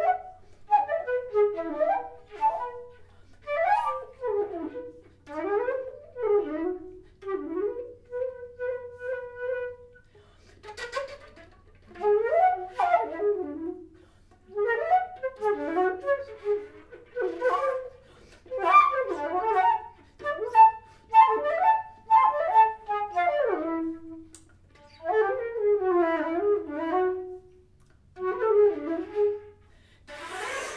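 Solo concert flute playing a slow contemporary piece in short phrases, many of them sliding in pitch, with brief pauses between phrases. About eight seconds in, one note is held steady for around two seconds.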